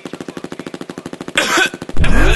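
Break in a trap beat: a rapid buzzing rattle of about twenty pulses a second, then a short hissing burst near the end.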